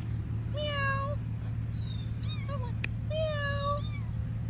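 A young, scared kitten crying with high-pitched mews: two longer calls with a short one between, over a steady low hum.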